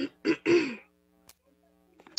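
A woman clearing her throat in three short bursts within the first second, the last one sliding down in pitch, over a faint steady hum.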